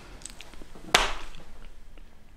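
A single sharp knock about a second in, trailing off into a brief rustle.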